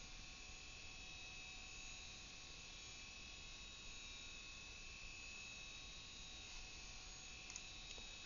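Near silence: a faint steady hum and hiss of background recording noise.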